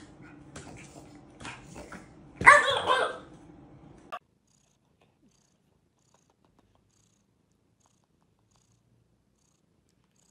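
Light taps and clicks, then one short, loud pitched cry about two and a half seconds in. After about four seconds it drops to near silence, with a faint cat purr.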